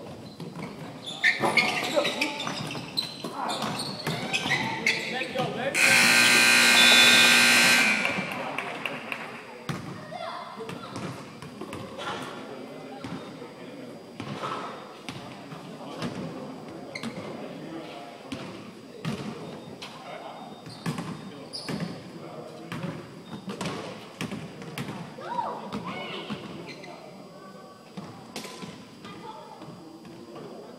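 A basketball bouncing on a hardwood gym floor, with players' voices and footfalls echoing in the large hall. About six seconds in, a loud scoreboard buzzer sounds for about two seconds.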